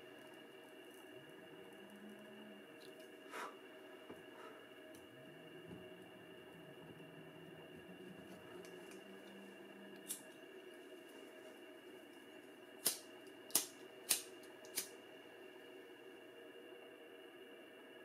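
Faint room tone with a steady low hum, broken by a few sharp clicks: a disposable lighter being struck, with four flicks in quick succession in the second half to relight it for burning the cut ends of the nylon D-loop cord.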